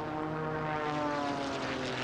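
Propeller-driven aerobatic race plane's piston engine droning steadily as it passes low overhead, its pitch sinking slowly.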